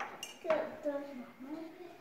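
A voice speaking briefly and indistinctly, with a light clink just after the start.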